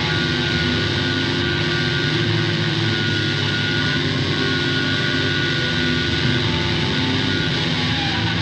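Electric guitars and bass from a live rock band hold a steady, sustained distorted drone, with no drums in it.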